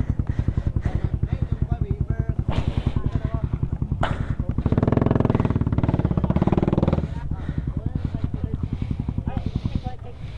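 Motorcycle engine idling with a steady rapid beat. It swells louder for about two seconds in the middle, then drops back.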